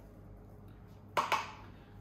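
A small spice pot tapped twice against a stainless steel mixing bowl, in two quick knocks a little over a second in, knocking the chilli powder out into the bowl. Faint steady room hum before the knocks.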